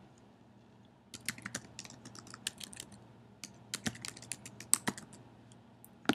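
Typing on a computer keyboard: a quick run of keystrokes that starts about a second in and stops about a second before the end, entering a web address.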